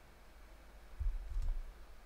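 Computer mouse being clicked and handled: a few faint clicks and low thumps about a second in, over quiet room tone.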